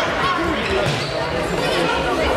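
An indoor football being kicked and bouncing on a sports-hall floor, with players and spectators shouting over it and the hall echoing.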